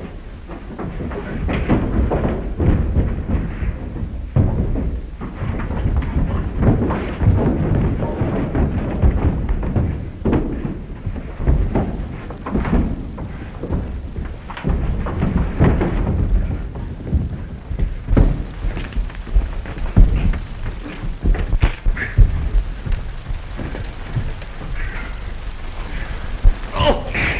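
A fistfight: a rapid, irregular run of thuds and thumps from punches, scuffling and bodies falling down wooden stairs and onto the floor, with background music.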